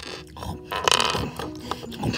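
A single loud burp from a person, about a second in, after a pretend feast of toy food.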